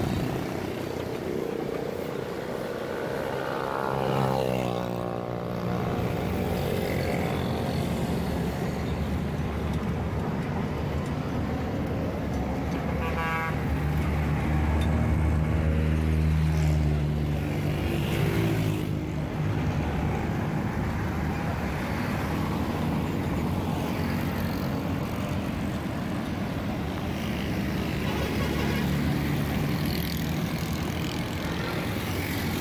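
Road traffic: vehicle engines running and passing. One goes by with a falling pitch about four seconds in, a short horn toot sounds a little before the middle, and a heavier low engine hum swells just after the middle.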